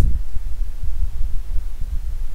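A steady, low background rumble with a faint hiss above it, and no speech.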